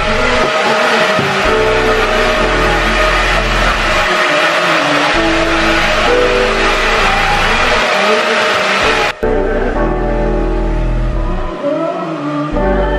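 Handheld hair dryer blowing steadily over background music; the blowing cuts off suddenly about nine seconds in, leaving the music.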